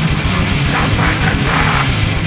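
Grindcore band playing at full volume, heard through a raw, distorted bootleg tape recording: a dense wall of distorted guitar and bass over fast, pounding drums.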